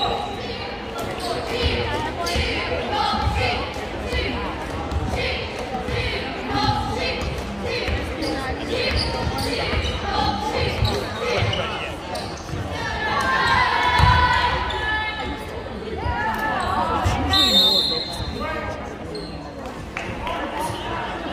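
Basketball bouncing on a hardwood gym floor, repeated dribbles under steady spectator chatter, with a brief high squeak near the end.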